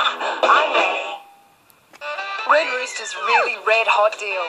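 Television commercial soundtrack: music with a sung jingle stops about a second in, a brief near-silent gap follows, then the next ad starts with music and swooping, sung or exaggerated voices.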